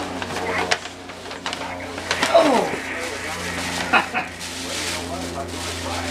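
Paper gift bag and tissue paper rustling and crinkling as a present is pulled out, over background voices and a steady low hum.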